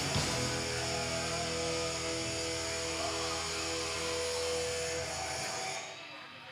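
A live rock band's closing chord: electric guitars and bass held ringing with no drumbeat, fading away about five and a half seconds in.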